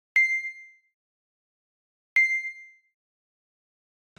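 A bright bell-like ding sound effect sounds twice, about two seconds apart, each note ringing out and fading within a second, with dead silence between.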